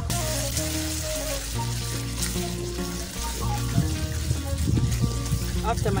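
Tomato sauce sizzling in a metal wok over a charcoal stove, an even frying hiss that starts suddenly, under background music of held, stepping notes.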